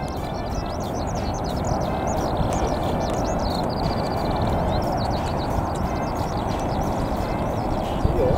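Small birds chirping repeatedly, with a short rapid trill near the middle, over a steady background rush.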